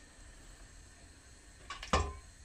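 Quiet room hum, then near the end a quick cluster of short metallic clicks and a knock: a metal ladle handled against stainless steel pots on the stove.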